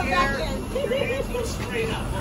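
Passengers' voices, with one wavering voice about a second in, over the steady low rumble of a moving narrow-gauge train car.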